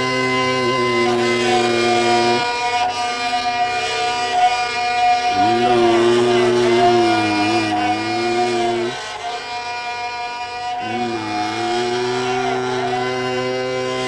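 Hindustani classical performance of Raag Yaman (Aiman) in its slow, unmetered opening: long held notes that bend and glide between pitches over a steady drone, with short pauses between phrases.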